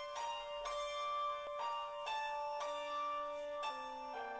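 Piano playing the introduction to a song before the voice comes in: single notes and chords struck about every half second, each left ringing, with lower notes joining in the second half.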